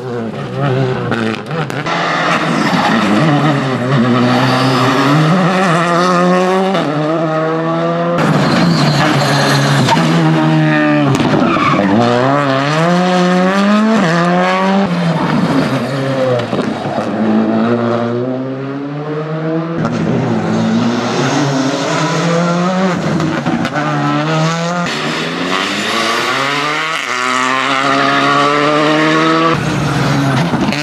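Škoda Fabia rally car's turbocharged four-cylinder engine revving hard up through the gears, its pitch climbing and dropping sharply at each shift, over several passes joined by cuts, with some tyre squeal in the corners.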